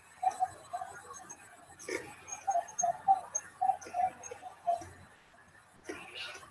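A run of light, irregular clicks, roughly two or three a second, with one sharper knock about two seconds in.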